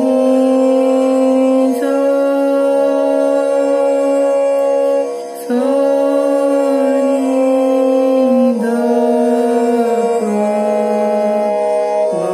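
Harmonium app on a smartphone playing sustained reed-organ notes one after another, each held for two to three seconds before stepping to the next pitch, with a brief break about five seconds in.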